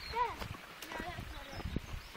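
A child's short wordless calls, high and sliding in pitch, over the knocks of footsteps on a tarmac lane.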